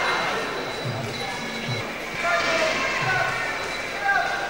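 Low, dull thumps repeating roughly every second and a half, with voices over them.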